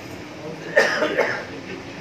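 A person coughing twice, about half a second apart, over low background murmur.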